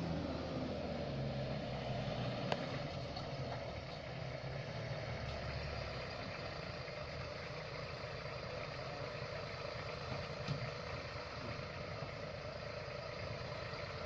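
A 4x4 jeep's engine running as the jeep drives up and pulls to a stop, then idling steadily.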